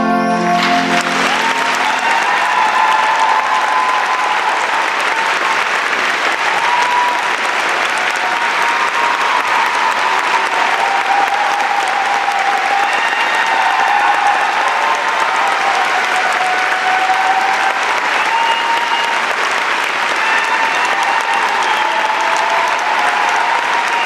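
Concert audience applauding loudly and steadily, with voices cheering and whooping through it, just as the orchestra's final sustained chord of the song dies away at the start.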